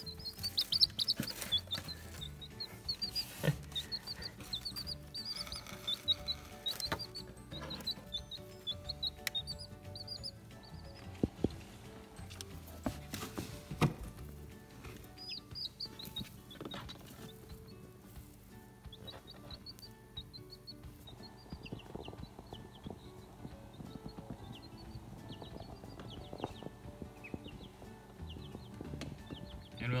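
Baby chicks peeping: runs of short, high, falling chirps, busiest in the first ten seconds and again in the middle, over background music. Scattered knocks and rustles come through as well.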